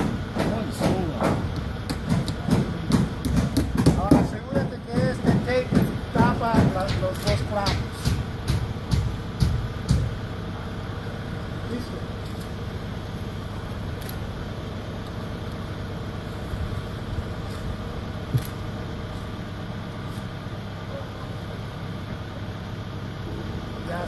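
Steady hum of an idling engine running throughout. Over it, people talk and a string of sharp taps sounds during the first ten seconds.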